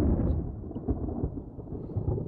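Thunder rumbling in a music video teaser's soundtrack, a deep rumble that starts loud and slowly fades.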